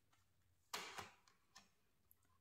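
Tarot cards handled: one short crisp rustle-snap of a card being pulled from the deck about three-quarters of a second in, then a faint tick.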